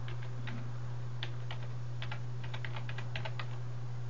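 Typing on a computer keyboard: about ten quick, irregularly spaced key clicks as one word is typed letter by letter, over a steady low hum.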